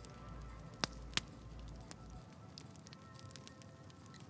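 Faint background music bed with a soft crackling like embers, and two sharp crackles close together about a second in.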